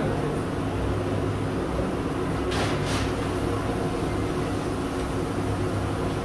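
Steady low hum of indoor ventilation, with two brief crackles about two and a half and three seconds in.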